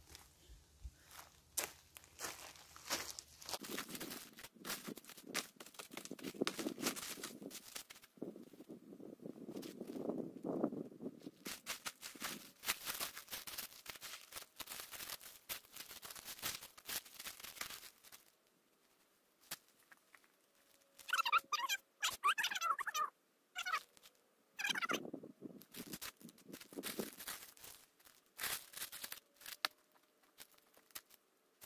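Plastic tarp rustling and crinkling as it is handled and smoothed on the ground, with scattered clicks and knocks of stones being set down on it. A few short pitched calls come near the end.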